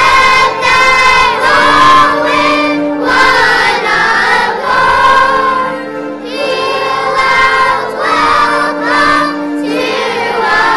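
Children's choir singing together on stage, in sung phrases with short breaks between them.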